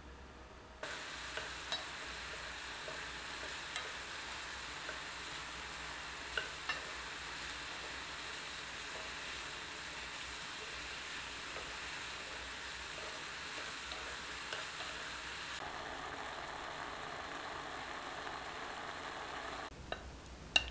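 Diced peaches simmering in sugar and water in a saucepan, sizzling steadily as the liquid cooks off, with light taps of a spatula against the pan as they are stirred. The sizzle starts about a second in and cuts off just before the end.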